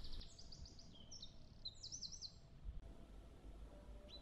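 Faint bird song: quick runs of short, high-pitched notes, each sliding downward, stopping about two and a half seconds in.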